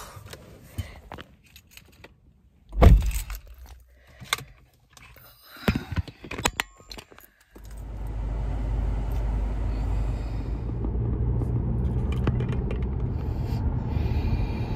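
Keys jangling and scattered handling clicks inside a car, with one loud thump about three seconds in, typical of the car door shutting. About halfway through, a steady low rumble of the car running starts and carries on, heard from inside the cabin.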